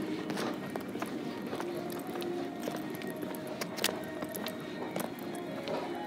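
Faint background music over footsteps on a hard tile floor, with a few sharp clicks scattered through.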